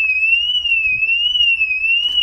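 A single high-pitched tone, wavering slowly up and down in pitch, held steadily for about two and a half seconds and then cut off.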